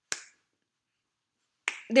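A single sharp finger snap at the very start, short and crisp.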